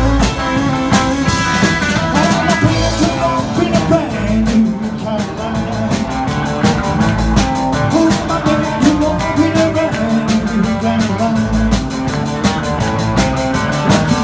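Live rock and roll band playing an instrumental passage: electric guitars over a drum kit keeping a steady, fast beat.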